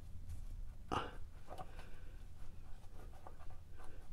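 Faint rubbing and light ticking of a nitrile-gloved hand turning a new spin-on oil filter onto its threaded mount by hand, with one sharper click about a second in.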